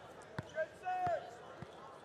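A volleyball being bounced on a hardwood court floor three times, about half a second apart, as a server readies to serve. Faint voices sound in the hall behind it.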